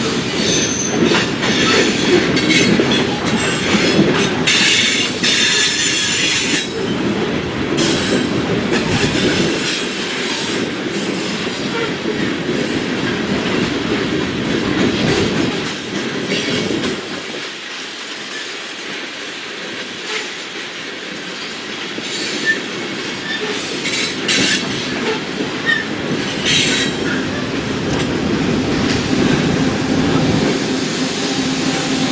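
Loaded coal hopper cars rolling past on the rails in a steady, loud rumble, with steel wheels squealing in short high-pitched spells several times, the longest lasting about two seconds.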